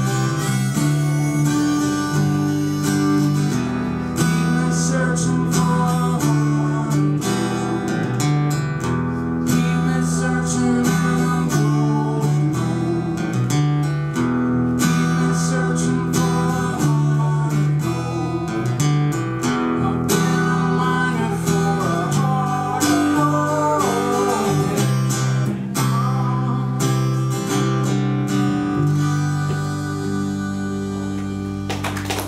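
Acoustic guitar strumming chords through a folk song played live.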